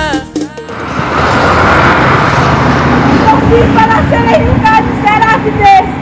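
A song cuts off in the first second. Steady road and wind noise from a moving car follows. From about three seconds in, short raised voices call out over it.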